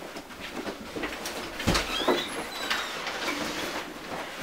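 Footsteps and clothing rustle as people move through a room and one pulls on a jacket. A thump comes a little under two seconds in, with a brief squeak just after.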